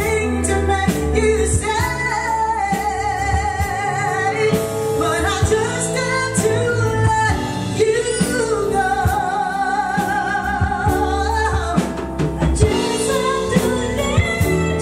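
Two women singing a duet with a live band of drum kit and electric bass, holding long notes with vibrato over steady drum strokes.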